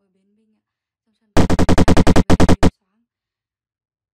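Cartoon sound effect: a rapid stuttering buzz of about a dozen quick pulses, lasting about a second and a half and starting about a second in.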